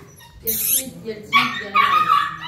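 Young puppies whimpering and yipping in high, wavering calls, strongest in the second half. A short rustle of handling comes about half a second in.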